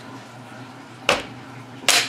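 Two sharp knocks about a second apart as parts of a Norinco T97 bullpup rifle are slid and seated back into the receiver during reassembly after a field strip.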